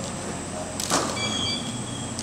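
A camera shot with a studio strobe firing once about a second in, a single sharp snap, followed by a faint high steady tone over a noisy room background.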